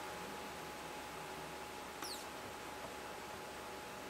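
A Nikon SB-900 speedlight fires at full power about two seconds in: a faint click and a brief high whine that falls in pitch, over steady low room hiss.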